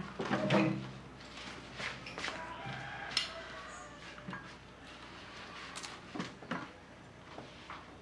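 Scattered light clicks and knocks of cups, saucers and tableware being handled at a table, with a brief voice at the very start.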